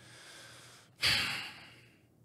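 A man's quiet breath in, then a sudden sigh-like breath out about a second in that fades away.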